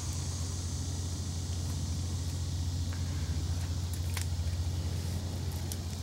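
Water running into a stone spring cistern, heard as a steady low rumble with a faint hiss above it and a few faint clicks.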